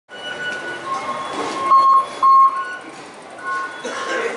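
Fare-gate Octopus card readers beeping as passengers tap their cards: a string of short single-pitch beeps at two different pitches, the two loudest about two seconds in, over the murmur and footsteps of a busy station concourse.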